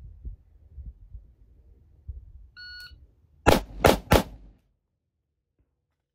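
A shot timer gives one short electronic beep. Under a second later come three gunshots in quick succession, about a third of a second apart. Low wind rumble runs on the microphone before the shots.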